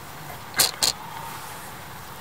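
Trials bicycle making two short scraping hisses, about a quarter second apart, as the rider balances it in place.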